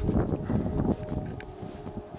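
Wind rumbling on the camera microphone, with uneven crunching thuds of someone trudging through deep snow, heaviest in the first second.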